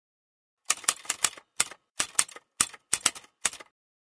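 Typewriter-style typing sound effect: a quick run of sharp keystroke clicks in small uneven clusters, starting just under a second in and stopping shortly before the end.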